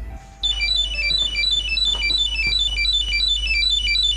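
Mobile phone ringing: a fast melodic ringtone of short high-pitched beeps, starting about half a second in and repeating the same little tune over and over.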